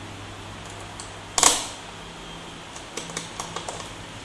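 Screwdriver working a small screw out of a laptop's plastic bottom cover: light ticks and scrapes of the bit in the screw head, with one sharp click about a second and a half in.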